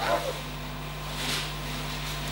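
Quiet room tone with a steady low electrical hum. There is a brief faint sound right at the start and a soft hiss a little past a second in.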